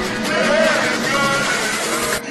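Slowed-and-reverbed qawwali-style song: a male voice singing a wavering, ornamented line over the accompaniment, with the deep bass beat dropped out.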